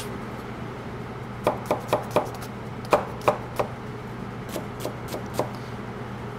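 Chef's knife dicing an onion on a cutting board: irregular knocks of the blade on the board, in short runs starting about a second and a half in. A steady low hum runs underneath.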